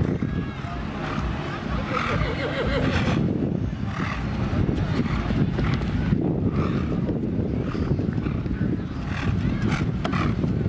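Outdoor field ambience: a steady low rumble of wind on the microphone, with indistinct voices of people in the background.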